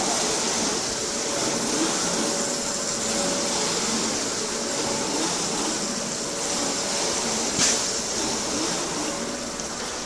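Automatic glass surface polishing machine running: a steady rush of noise with a faint steady tone under it, and one sharp knock about seven and a half seconds in.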